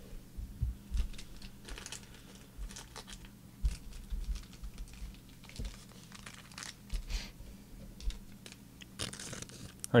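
Soft handling noises of trading-card packaging: brief plastic-wrap crinkles and scattered light clicks and taps, with the clearest crinkle about two seconds in and another near the end, over a faint steady hum.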